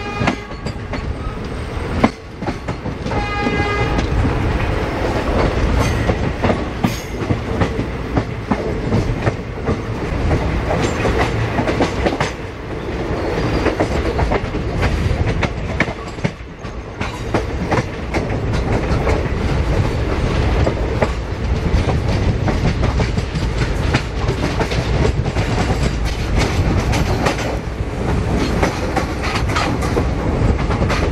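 Passenger express train running at speed, heard from inside a coach: a steady rumble with wheels clacking over the rail joints. A train horn blast ends about half a second in, and a second short blast sounds about three seconds in.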